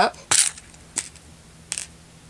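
Three short, sharp clicks and rustles, about a second apart, from quilting pins and fabric pieces being handled on a cutting mat.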